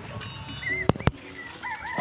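Chickens clucking and birds calling in short wavy chirps, with two sharp clicks close together about a second in.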